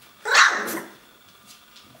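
A three-week-old Wäller puppy gives one short bark about a quarter second in, fading within half a second.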